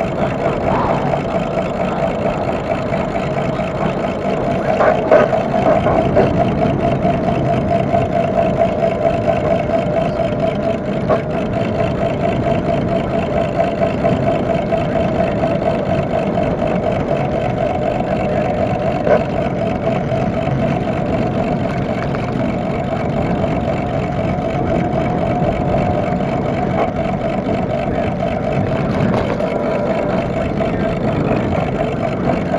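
Electric bicycle's hub motor whining steadily at cruising speed, over a rush of wind and tyre noise, with a few brief knocks from bumps about five seconds in and near the twenty-second mark.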